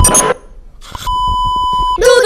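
A brief burst of static-like noise, then about a second in a steady, buzzy 1 kHz test-tone beep starts and holds: the tone that goes with TV colour bars.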